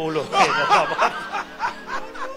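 A man chuckling into a handheld microphone, mixed with a few spoken sounds.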